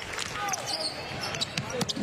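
Basketball-arena sound during play: a ball being dribbled on the hardwood court over crowd noise, with a few sharp knocks in the second half.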